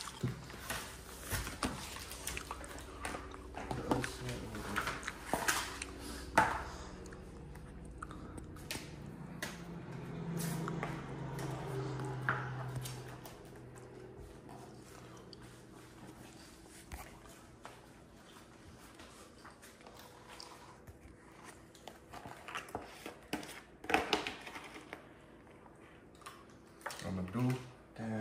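Scattered rustles, taps and clicks of vinyl decal sheets and plastic motorcycle body panels being handled and peeled on a countertop, with a low voice for a few seconds near the middle.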